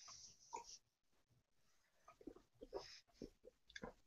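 Near silence with a few faint sips, swallows and breaths from someone drinking beer from a glass and tasting it.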